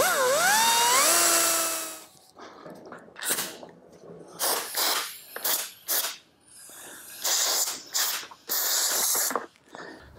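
Die grinder with a burr cutting away a plastic ridge in a dirt bike's battery box: one run of about two seconds whose pitch dips and then rises and holds, then a string of short bursts as the trigger is blipped.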